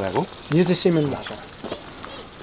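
A steady high-pitched insect trill, unbroken throughout, with a man's voice speaking briefly over it in the first second or so.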